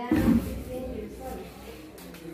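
Students' voices talking in a classroom, with a loud low bump shortly after the start.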